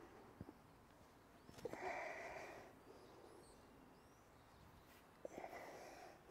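Near-quiet air with a man's hard exhales, each lasting about a second: one about two seconds in and another near the end, breathing from the effort of spinning a dragon staff. Faint bird chirps come in around the middle.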